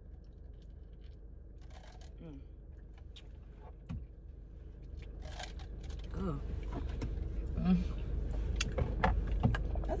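Low, steady rumble inside a car cabin that grows louder about halfway through, with a few small clicks and knocks and faint murmured reactions from people who have just downed shots.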